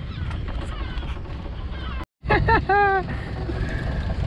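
Steady low wind-and-water noise on a small boat at sea, broken by a sudden cut about halfway through. After the cut a person's drawn-out voice sounds twice, falling in pitch, with no clear words.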